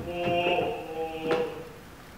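A man singing, holding long notes that fade quieter near the end.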